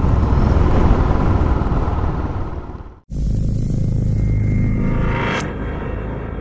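Motorcycle engine and wind noise while riding, fading out over about three seconds. After a moment of silence comes a dramatic music sting: a deep rumble with a held high tone, and a whoosh about five and a half seconds in.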